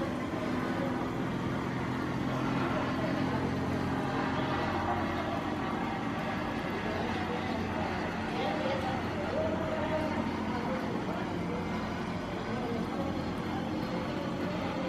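Steady urban night background: a low hum of engine or machinery that fades about four to five seconds in, with faint, indistinct voices in the distance.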